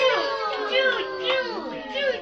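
Several women's high-pitched voices calling out together in a rhythmic sing-song chant, each phrase falling in pitch and repeating about twice a second, with hand clapping.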